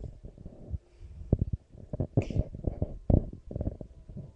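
Handheld microphone handling noise: irregular low thumps and rumbles as the mic is moved and rubbed, with one brief hiss about two seconds in.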